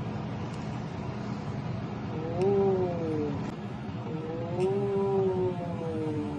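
A child's voice making two drawn-out wordless notes, each rising and then falling in pitch, over a steady low hum.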